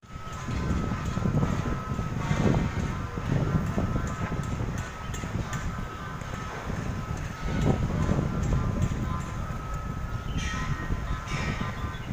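Steady low rumble of outdoor city noise, mostly traffic, with a faint steady whine running through it.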